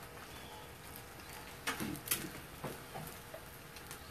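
Eggs frying on a flat-top griddle, a faint steady sizzle, with a few soft knocks of handling around the middle.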